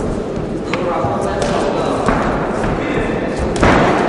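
Voices shouting in a large sports hall during an amateur boxing bout, with a few small knocks and a loud thud near the end as the boxers exchange punches.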